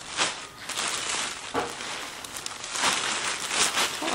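Plastic-wrapped bundles of dry grain sheaves crinkling and rustling as they are grabbed and shifted by hand, with a string of irregular crackles.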